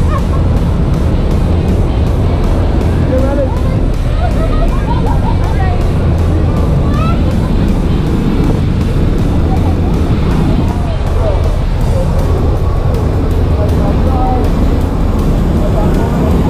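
Steady loud drone of a jump plane's engines and propeller wash and wind through the open door, with scattered shouts from the jumpers in the cabin.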